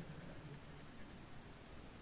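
Faint scratchy rubbing of a fingertip working powder eyeshadow in the pans and swatching it.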